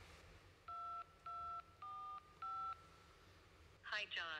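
Four telephone keypad touch-tones (DTMF) as a four-digit PIN is keyed into a phone call, each beep short and evenly spaced, the first two the same pitch.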